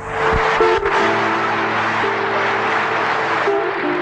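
Music with long held chords over a loud, even rushing noise, coming in suddenly.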